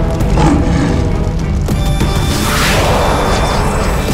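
Dramatic orchestral background score with a heavy low drone, and a rushing noise effect that swells and fades about halfway through.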